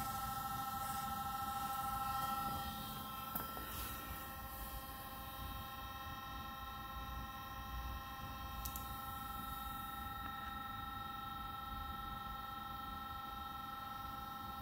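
Electric auxiliary cooling fans of a Mercedes W140 S600, switched on by a diagnostic climate-control test, running with a steady hum and a few steady high tones. The sound drops a little about two and a half seconds in, when one of the tones stops.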